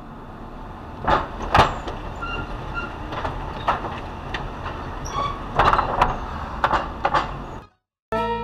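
A car rolling slowly over a narrow wooden-plank bridge deck, heard from inside the car: a steady tyre rumble over the boards, broken by repeated sharp clunks and short squeaks from the bridge. The bridge is squeaky.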